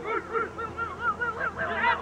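Several voices shouting over one another in short raised calls, several a second, as football players and spectators call during a contest for the ball.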